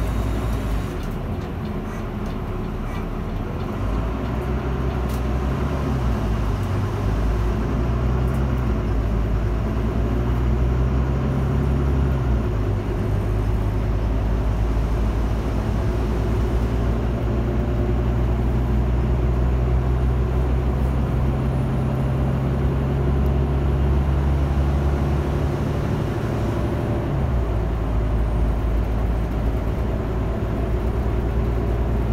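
Volvo bus engine running on the road, a steady low drone whose pitch steps up and down several times as the bus changes speed.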